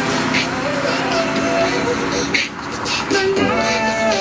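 Background pop song with a singing voice over a drum beat.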